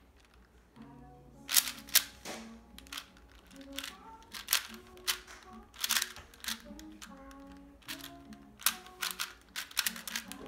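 A plastic 4x4 puzzle cube being turned by hand, its layers snapping and clicking in quick, irregular bursts, loudest twice a little under two seconds in. Quiet music with a simple melody plays underneath.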